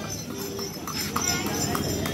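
Horse hooves clip-clopping on the paved street as a horse-drawn cidomo cart passes close by, with the hoof strikes coming through plainly from about a second in.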